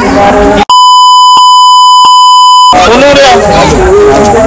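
Censor bleep: a steady, high electronic beep about two seconds long that replaces the speech outright, starting and stopping abruptly, with two faint clicks inside it. Men talking before and after it.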